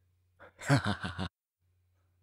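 A person laughing briefly: a short laugh of several quick voiced pulses, starting about half a second in.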